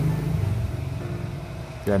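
A steady low engine hum, like an idling motor, growing a little fainter over the two seconds.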